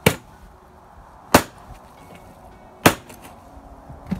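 Three sharp chops of a blade cutting through a plucked rooster's neck into the table top, about a second and a half apart, taking the head off.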